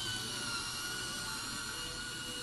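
Small handheld electric paper shredder running as it cuts pages of paper into strips, with a steady whine.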